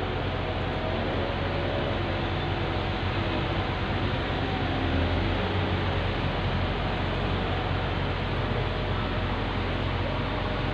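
Truck-mounted concrete boom pump running steadily, its engine giving a low hum under a wash of noise while the hydraulic boom is raised and unfolded.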